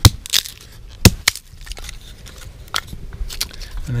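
Short dry split kindling sticks being set down on a wooden board, knocking against it and each other in a few sharp wooden clacks, the loudest right at the start and about a second in, with light crunching of dry forest litter between.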